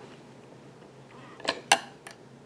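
Two sharp clicks about a fifth of a second apart, the second louder, from hand work with a latch tool at the plastic needles of an Addi Express circular knitting machine.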